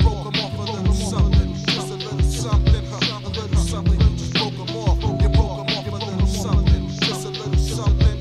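Mid-1990s East Coast hip hop beat: a looped drum pattern of kick and snare over a bass line, with held melodic tones on top.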